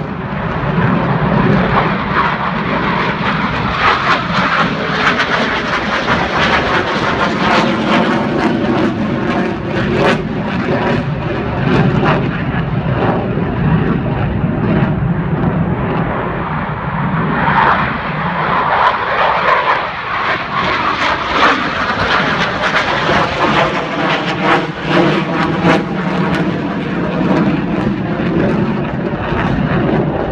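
Loud, continuous jet engine noise from a delta-wing fighter jet flying overhead. The noise is brightest about two-thirds of the way through.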